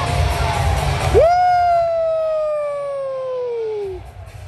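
Arena PA music: the bass cuts out about a second in, leaving one long high note that jumps up and then slides slowly down for almost three seconds before it cuts off.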